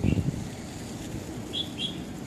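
A small bird chirps twice, two short high notes close together near the end, over a steady low outdoor rumble; a brief louder low rumble comes at the very start.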